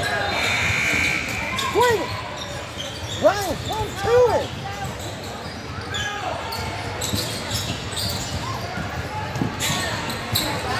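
Basketball game in a gym: sneakers squeak on the hardwood court several times in quick succession near the middle, each a short rising-then-falling squeal, while a ball bounces and spectators talk in the echoing hall.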